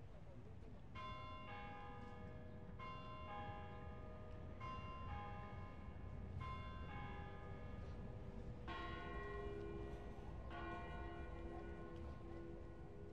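Church tower bells ringing: pairs of strikes about every two seconds, each note left ringing, with a deeper bell joining near the end.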